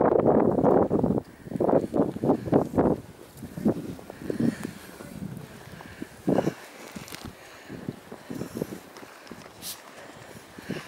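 Footsteps crunching in snow: a dense patch of crunching in the first second, a quick run of separate steps about two seconds in, and scattered steps later.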